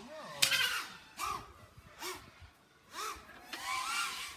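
FPV racing quadcopter's brushless motors and propellers whining up and down in several short bursts of throttle.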